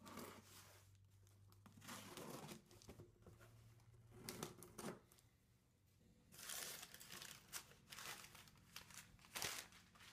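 Cardboard shipping box being opened by hand: packing tape tearing and flaps rustling, then crumpled paper packing crinkling as it is pulled out. The sounds come in several short, faint bursts.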